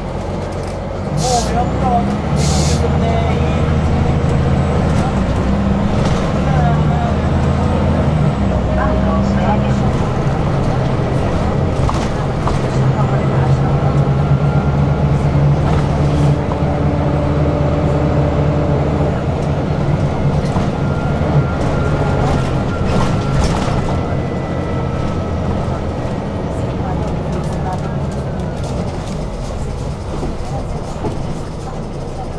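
City bus heard from inside the passenger cabin: two short hisses of air near the start, then the engine and drivetrain hum rises as the bus pulls away and runs on steadily, easing off near the end.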